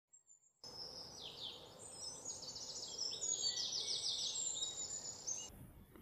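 Faint birdsong: several birds chirping and trilling in quick, rapidly repeated note series. It starts about half a second in and stops shortly before speech begins.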